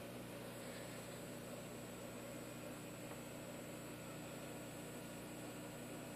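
Faint, steady hum and hiss of running aquarium equipment, with no changes or distinct events.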